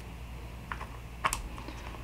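A few light clicks of hard plastic being handled, the sharpest a little past a second in, over a low steady hum: the snap-on lid of a small clear plastic sling enclosure being fitted shut.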